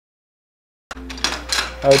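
Dead silence for nearly a second, then the sound cuts in abruptly at a recording edit: a steady low hum with a few clicks and rustles. A voice comes in near the end.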